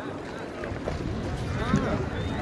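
Background voices, with a low wind rumble on the microphone that strengthens about half a second in. A short pitched call rises and falls near the end.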